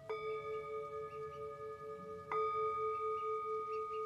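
A small hand-held Tibetan singing bowl struck twice with a wooden striker, about two seconds apart; each strike rings on in a clear, lingering tone that pulses slowly.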